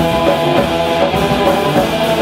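Live instrumental surf punk: loud electric guitars, bass guitar and drum kit playing at a fast, steady beat.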